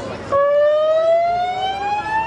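A siren winding up: one tone rising slowly and steadily in pitch, starting about a third of a second in.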